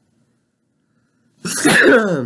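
Near silence, then about a second and a half in a person's short, loud laugh that falls in pitch.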